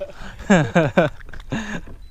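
A man laughing: three quick laughs falling in pitch about half a second in, then one more near the end.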